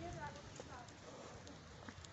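Faint voices of people talking a little way off, with footsteps on stone paving.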